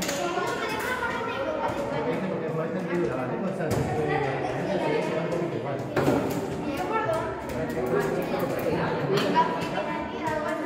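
Many children's voices chattering at once, with no single speaker standing out. A few short sharp clicks or knocks come in among the voices.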